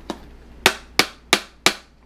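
Four sharp knocks, evenly spaced about three a second, on the clear acrylic case of an Elegiant speaker, rapped to test how hard the plastic is.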